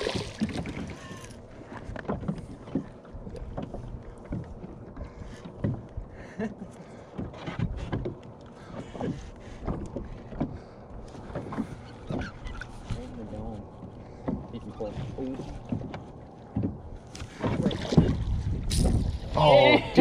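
A hooked bass thrashing and splashing at the surface beside a small plastic fishing boat, loudest at the very start, then water lapping with scattered small knocks and taps against the boat. Louder splashing returns near the end as the fish is netted.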